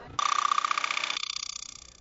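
Electronic buzzing tone, like a broadcast transition sound effect, with a rapid even pulse. It starts suddenly, loses its lower part about a second in, and fades out near the end.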